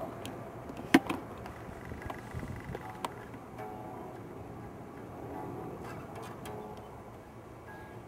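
Hollow-body electric guitar strummed by hand, its strings ringing faintly as a demonstration of the strings and body resonating. A sharp click about a second in is the loudest sound.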